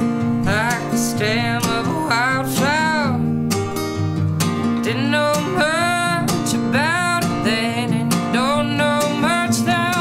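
A woman singing a folk-punk song while strumming a steel-string acoustic guitar with a capo, her sung lines running over steady strummed chords.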